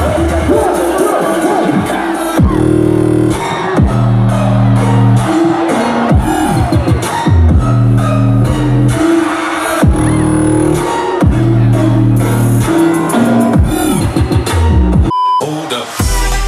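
Loud bass-heavy electronic dance music from a live DJ set, heard through the crowd, with a deep bass line that jumps between notes in a stepping pattern. About a second before the end the music cuts out and a short single-pitched beep sounds in the gap.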